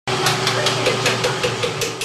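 Chocolate-factory machinery running: a steady hum with a regular ticking about five times a second.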